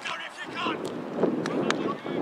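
Soccer match sound heard from the sideline: wind on the microphone, distant shouts from players, and a few short sharp taps.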